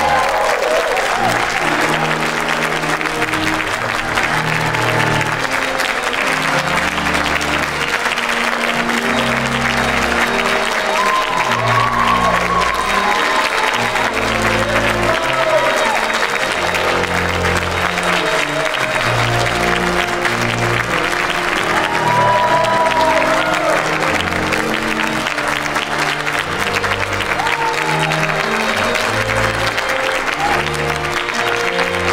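A large audience applauding steadily over music with sustained low notes.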